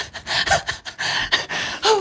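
A man gasping and breathing hard in excitement, with breathy laughter, breaking into a voiced 'oh' near the end.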